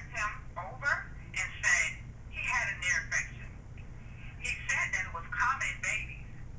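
A woman's voice speaking in short phrases over a low steady hum.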